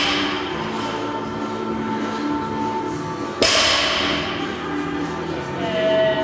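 Background music, with one sharp impact of a weight hitting the gym floor a little past halfway, ringing briefly after it.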